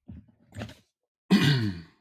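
A man's short wordless vocal sound, a sigh or grunt, falling in pitch, about a second and a half in. It is preceded by a couple of faint soft sounds.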